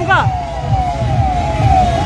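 Tractor engines running in a slow procession, with a wailing tone over them that falls in pitch again and again.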